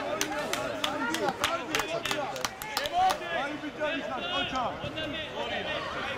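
Several people's voices talking and calling at once, overlapping. Through the first half there is a run of sharp taps about three a second.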